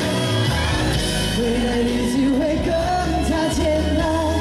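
A man singing a Mandarin pop song live into a handheld microphone over pop backing music. His voice comes in about a second in and climbs in pitch.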